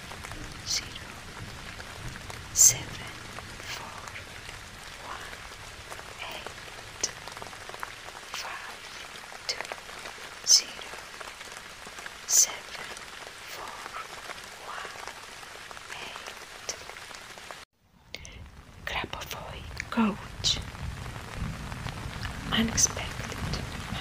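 Steady rain with scattered sharper drop hits. The sound cuts out for a moment about eighteen seconds in, then picks up again.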